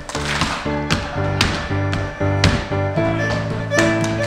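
A contra dance band playing a fiddle tune: fiddle over steady chords from a keyboard, with sharp percussive knocks marking the beat.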